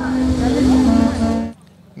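A steady low hum with faint voices underneath, which cuts off abruptly about one and a half seconds in.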